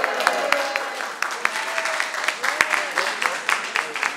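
A small group clapping their hands in scattered, uneven claps, with voices calling out over them.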